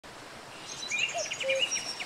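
Birds chirping, a run of short quick calls starting about half a second in, over a soft steady hiss of nature ambience.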